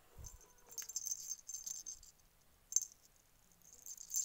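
Light rattling and clinking of small toys being handled, in short scattered spells, with a dull thump just after the start and a single sharp click a little before three seconds.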